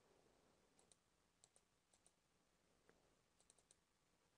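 Near silence with a few faint computer mouse clicks, single and in quick groups.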